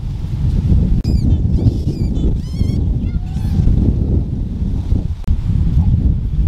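Domestic white goose honking, a run of several wavering calls from about a second in until nearly four seconds in. Under it, a steady low rumble of wind on the microphone.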